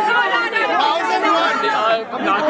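Several people talking loudly over one another in a close, packed crowd.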